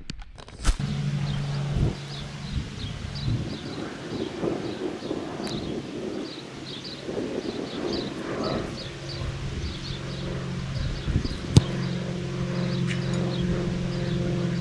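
Birds chirping over and over across an open field, with a steady low hum. A click comes near the start, and one sharp knock, the loudest sound, comes about eleven and a half seconds in.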